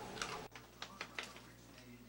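Several light, sharp, irregular clicks from a small dog moving about, with an abrupt change of background about half a second in.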